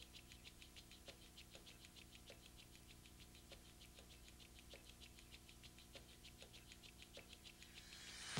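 Near silence: a low steady hum with faint, rapid, regular ticking, about six ticks a second.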